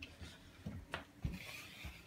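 Footsteps across a tiled floor with rustling handling noise, and a sharp click about halfway through.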